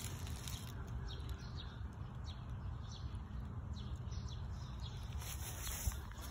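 Faint outdoor background: a steady low rumble on the handheld phone microphone, with scattered faint bird chirps.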